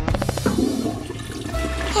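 Toilet flushing: a rush of water, after a quick rattling run of strokes in the first half second.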